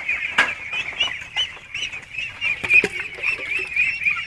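A large flock of young egg-laying ducks peeping continuously, with many short, high calls overlapping.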